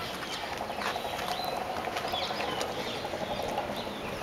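Quiet outdoor background with light scuffing and a few faint, short high chirps.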